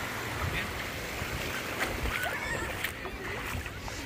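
Beach ambience: a steady rushing noise with a low rumble, faint distant voices and a few small clicks.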